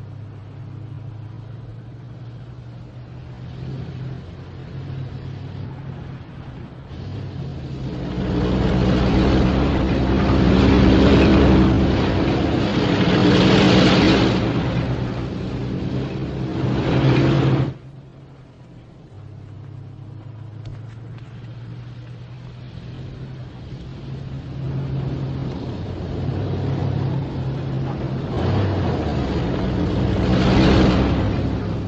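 Car engines running as vehicles drive by at night, with a steady low hum. The sound swells loud and cuts off suddenly about two-thirds of the way through, then builds again near the end.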